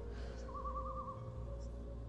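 A brief warbling bird call about half a second in, over a steady low drone of background music.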